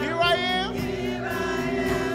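Gospel praise team singing together over sustained chords held underneath.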